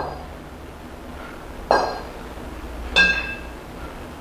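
A pair of kettlebells knocking together as they are swung and cleaned: a faint knock at first, then two loud metallic clinks about 1.7 and 3 seconds in, the second ringing briefly as the bells meet in the rack position.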